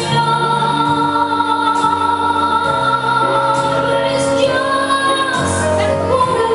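A female vocalist singing long held notes into a microphone, over live instrumental accompaniment.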